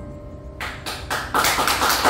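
The last keyboard chord dies away. About half a second in, an audience starts clapping: a few separate claps at first, then full applause that grows louder.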